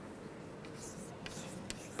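Chalk writing on a blackboard: a few faint scratchy strokes in the second half, over quiet room hiss.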